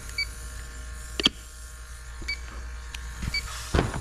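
Electronic refrigerant leak detector giving short, faint high beeps at irregular intervals of about a second. A sharp click about a second in and a louder knock near the end come from handling gear on the bench.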